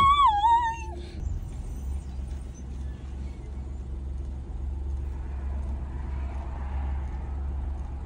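A woman's high, wavering squealed note lasting about a second, then the low, steady rumble of a car idling, heard from inside the cabin.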